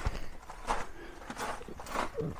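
Footsteps: about four soft steps, a little over half a second apart.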